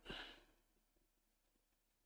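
A person's short breathy exhale, like a sigh, fading out within the first half-second, then near silence.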